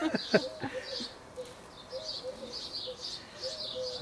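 Garden birds calling: short high chirps repeated all through, over a faint low note that comes and goes. A brief laugh and a few small clicks sound in the first half-second.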